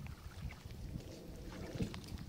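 Floodwater splashing and sloshing as a long pole is dipped and pushed through it to paddle a small boat, with wind rumbling on the microphone and a louder splash near the end.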